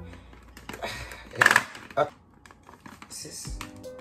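Light plastic clicks and knocks from a mini electric food chopper's jar and motor top being handled, with a couple of short louder bursts about one and a half and two seconds in.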